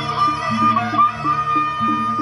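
Gendang beleq ensemble music from Lombok: a held high melody line over a lower pattern that repeats a few times a second.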